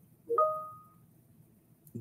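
A single short chime: a quick upward sweep that settles into one ringing tone and fades out within about a second.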